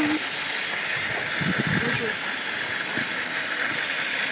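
Electric radio-controlled Traxxas truck running, its motor and geared drivetrain giving a steady whirring hiss as it drives across gravel.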